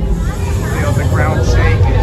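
A steady low rumble with an indistinct voice through the middle.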